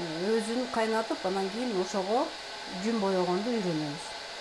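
A woman's voice speaking quietly, over a steady faint hiss.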